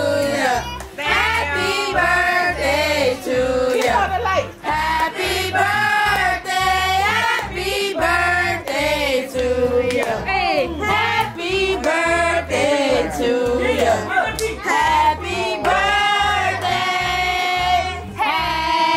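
Several voices singing over music with a steady, even beat.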